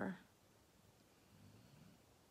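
The last syllable of a woman's voice fades in the first moment, then near silence: room tone.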